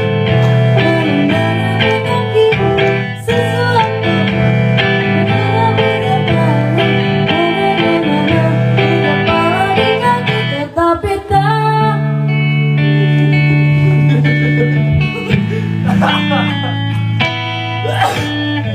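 Live music from an electronic keyboard and a guitar, with a long held low chord about two-thirds of the way through.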